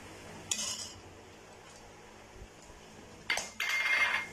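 A perforated metal skimmer scrapes against a metal kadai while stirring raisins and nuts in ghee. The louder scrape, with a faint metallic ring, comes near the end. About half a second in there is a brief soft rustle as the raisins are tipped into the pan.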